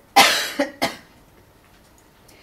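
A woman coughing twice, two short, loud coughs within the first second.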